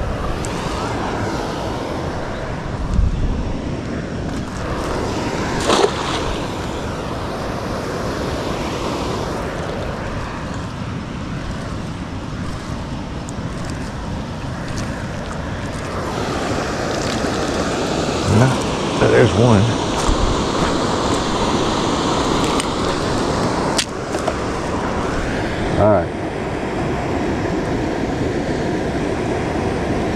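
Steady rushing of a river waterfall. A few brief knocks and some dripping splashes come as a cast net is thrown and hauled back in by its rope.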